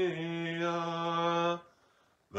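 A man's solo liturgical chant, holding one steady sung note that stops suddenly about a second and a half in, leaving near silence.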